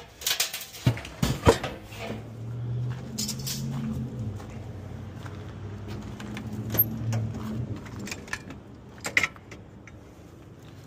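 Metal knocks and rattles as a sheet-metal blower housing with its squirrel-cage wheel is handled, then a low steady hum for several seconds. Sharp clicks near the end as a truck's tool-compartment door is unlatched and opened.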